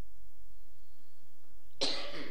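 A man coughs once near the end, a short rough burst after a pause of low room tone.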